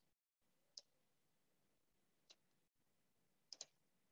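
Faint computer mouse clicks in near silence: a single click, another a second and a half later, then a quick double click near the end.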